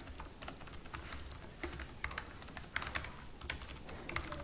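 Computer keyboard typing: a quiet run of irregular keystrokes.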